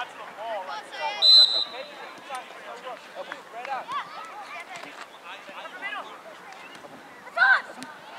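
A referee's whistle gives one short, shrill blast about a second in. It is the loudest sound, over steady scattered shouts and calls from players and sideline spectators. A loud shout comes near the end.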